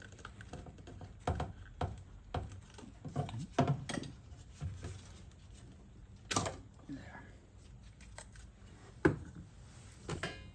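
Scattered sharp plastic clicks and knocks from a car door speaker and its wiring connector being unplugged and lifted out of the inner door, with the loudest click about six seconds in.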